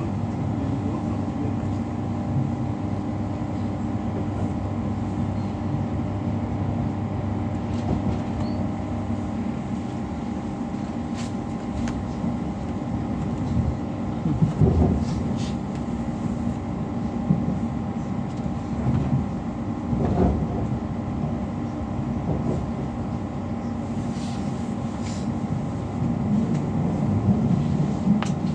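Interior running noise of a Class 345 electric train travelling at speed: a steady rumble and hum, with a few brief louder bumps about halfway and two-thirds of the way through.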